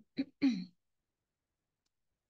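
A woman clearing her throat: two short bursts in the first second.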